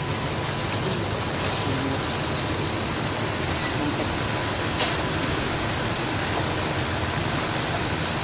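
Steady, even hiss of background noise with no voices, in a pause of the recitation.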